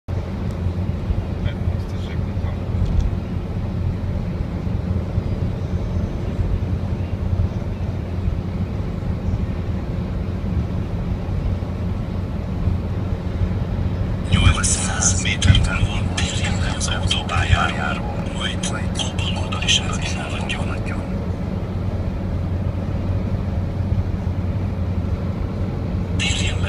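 Steady drone of road and engine noise inside a car's cabin at motorway speed. About halfway through, a voice speaks for several seconds.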